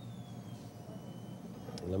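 Steady low background hum with a faint thin high whine above it, the noise floor of an old video recording; no instrument sounds stand out. A man's voice begins at the very end.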